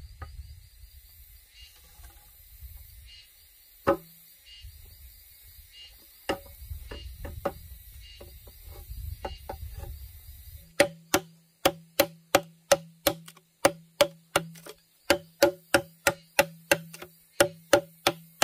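Scattered knocks of bamboo poles being handled, then, about eleven seconds in, a machete chopping into a green bamboo pole in steady strokes, about two and a half a second, each with a short hollow ring. Insects chirp faintly throughout.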